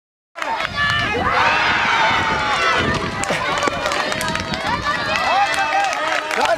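Many voices of young baseball players and onlookers shouting and calling out at once, overlapping and high-pitched, cutting in suddenly less than half a second in, right after a slide into home plate.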